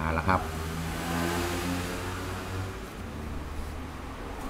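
A passing vehicle: a low engine hum with a wash of noise that swells about a second in and fades by about three seconds.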